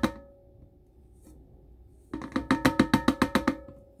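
A metal coffee can knocked rapidly, about eight knocks a second, to shake the last ground coffee out into a cold brew filter; the can rings faintly with each knock. One run of knocks ends right at the start, then after a pause of almost two seconds a second run lasts just under two seconds.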